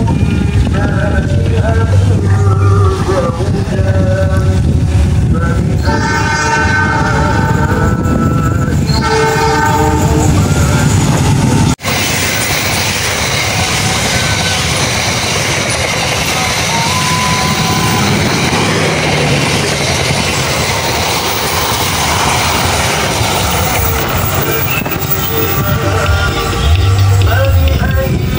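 Diesel locomotive horn sounding as a passenger train approaches, with two long blasts about six and nine seconds in over the engine's low rumble. After a brief cut about halfway, there is the steady rushing and clatter of passenger coaches passing close by on the rails.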